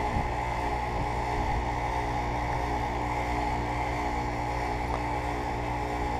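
Payne heat pump outdoor unit in its defrost cycle: the scroll compressor runs with a steady, even hum while the condenser fan stands still.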